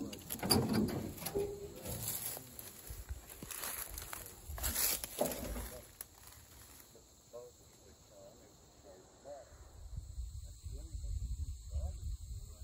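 Rustling and knocking from handling and brushing, with a low rumble underneath, busiest in the first half. Faint voices come in during the second half.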